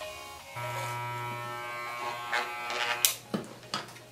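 Cordless electric hair clipper buzzing steadily as it shaves a beard, coming up strongly about half a second in, with several sharp clicks near the end.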